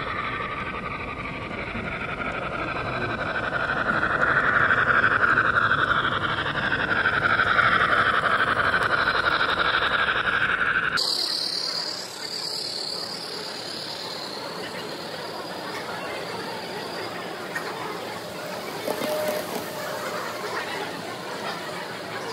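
A long model freight train of hopper cars rolling steadily along the track, with the sound sped up with the footage. The sound changes abruptly about halfway through, at a cut.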